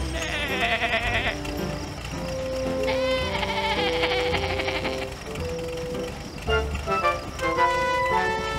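Sheep bleating twice, in two long wavering bleats: one right at the start and one about three seconds in, over light background music.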